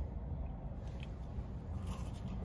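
Faint biting and chewing of a Cajun french fry, a few soft short crunches over a low steady hum.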